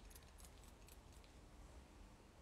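Near silence, with a few faint, short, high hisses and clicks in the first second from a perfume bottle's spray pump being pressed.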